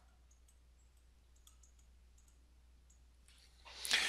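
Very faint, scattered clicks of a stylus tapping on a pen tablet as digits are handwritten, over near-silent room tone.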